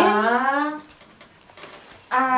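A woman's voice drawing out one long syllable that rises slowly in pitch for about a second, then quiet room sound.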